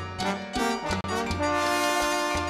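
Salsa band's brass section playing a short figure between sung lines, then holding a long sustained chord from a little past halfway, over the band's percussion.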